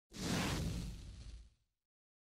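Whoosh sound effect for a logo animation: a sudden swell of rushing noise with a deep rumble underneath, lasting about a second and a half before fading out.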